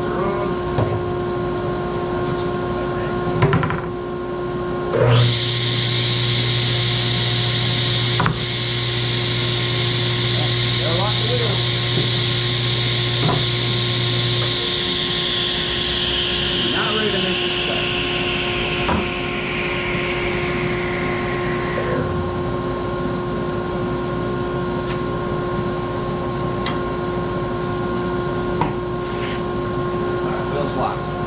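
A 3-horsepower table saw switches on about five seconds in and runs while ripping plywood. It is switched off around the middle and coasts down with a falling whine. A steady, lower machine hum runs underneath throughout.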